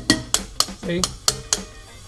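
A run of sharp metal-on-metal strikes, about six in all, as a socket held on a valve spring retainer of a Ford 460 big-block is hammered. The taps, made with the cylinder held under air pressure, knock the retainer loose from the valve keepers so they will not stick when the spring is compressed.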